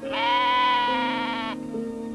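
A lamb bleating once, a single steady call about a second and a half long, over background music with sustained low notes.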